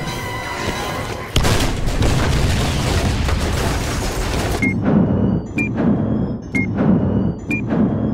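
A sudden loud explosion about a second and a half in, the gas plant blowing up, rumbling on for about three seconds under a dramatic score. Then a digital-clock ticking sound effect takes over: a low thud with a short high beep, about once a second, as the on-screen clock counts seconds.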